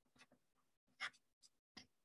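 Faint stylus strokes and taps on a tablet screen as handwriting is written: a few short scratches, the clearest about a second in.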